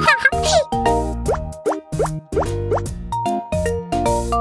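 Bouncy children's cartoon music with cartoon sound effects on top: a warbling trill right at the start, then four short upward-sliding boops in quick succession.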